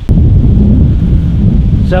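Wind buffeting the camera microphone, a loud steady low rumble, after a sharp click right at the start.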